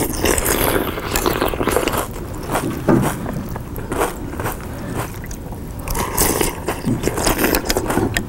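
Loud, deliberate crunching and chewing of food, with irregular crackling and rustling of packaging.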